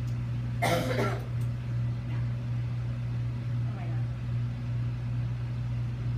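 A steady low hum runs throughout, with a short burst of a voice about a second in and fainter voices later.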